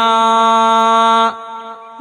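A Buddhist monk's voice chanting Sinhala kavi bana verse holds one long, steady note for just over a second, then breaks off into a short pause before the next line.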